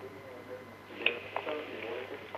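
Faint, indistinct voice sounds in short snatches, over a low steady hum.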